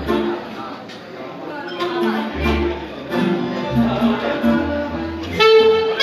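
A live Romanian folk wedding band striking up a tune: pulsing low bass notes and keyboard chords, then a reed wind instrument comes in near the end with a loud held note, over the guests' chatter.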